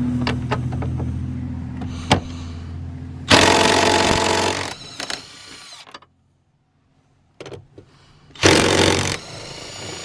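Cordless impact driver backing out seat-mounting bolts from the floor: its motor whirs steadily for about three seconds, then it hammers loudly for over a second. After a break, a second short burst of hammering comes near the end.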